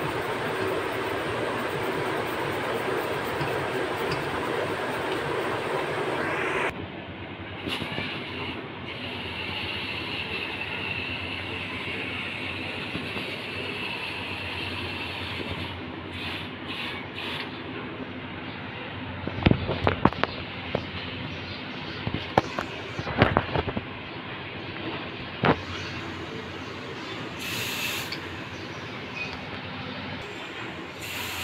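Garden pressure sprayer spraying water through its brass nozzle into a stainless steel sink, a steady hiss and splash. A louder, rougher steady noise fills the first several seconds and stops abruptly. Several sharp clicks and spatters come in the second half.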